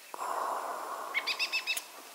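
A bird chirping: a quick run of about seven short, high notes lasting about half a second, over a faint steady hiss.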